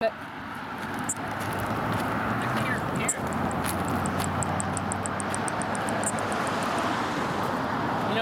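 Katydid call: a run of short, high, evenly spaced ticks, about six or seven a second. It starts a few seconds in and stops near the end, over a steady background rumble.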